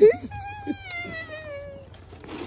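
A high-pitched human voice: a short loud yelp, then one long drawn-out note that slowly falls in pitch for about a second and a half.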